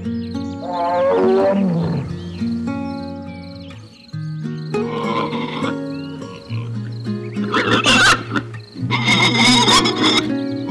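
Background music plays throughout. About a second in, an animal gives one long call that falls in pitch. In the last few seconds, wild boar piglets squeal in two loud bursts.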